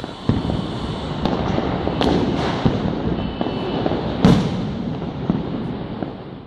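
Fireworks going off: a steady noisy din with several sharper bangs scattered through it, the loudest about four seconds in, easing off near the end.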